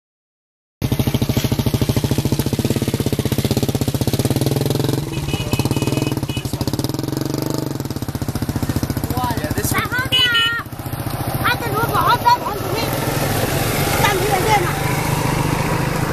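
A small engine running steadily with a fast, even beat, starting about a second in.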